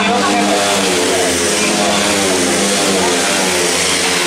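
Several grass track racing motorcycles, 500 cc single-cylinder speedway-type engines, racing together at full throttle. Their overlapping engine notes rise and fall as they drive through a bend.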